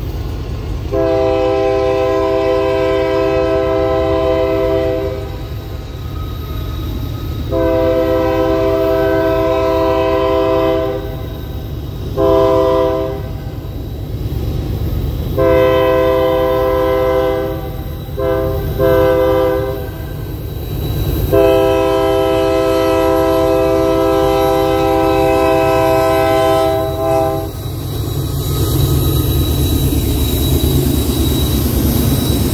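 Lead Union Pacific CM44ACM diesel locomotive's air horn sounding the grade-crossing signal: two long blasts, a short one, then a long one, followed by another long blast. A steady low diesel-engine rumble runs underneath and swells near the end as the locomotives draw close.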